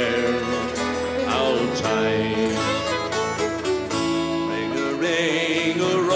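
Irish folk band playing an instrumental passage between verses of a slow ballad live: acoustic guitar strumming with banjo and fiddle, the fiddle holding wavering notes.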